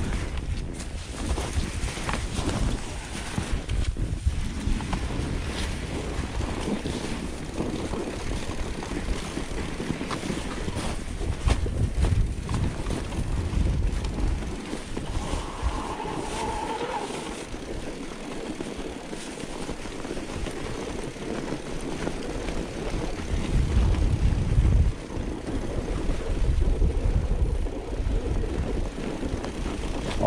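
Wind buffeting the microphone as a mountain bike rolls down packed snow, a steady low rumble that swells louder twice in the second half, with scattered knocks and rattles from the bike.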